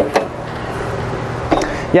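Folding metal RV entry steps clanking as they are swung up into the doorway: two sharp knocks at the start and another at about a second and a half, over a steady hiss of background noise.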